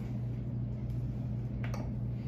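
Steady low electrical hum of equipment in a small exam room, with one faint click or rustle near the end.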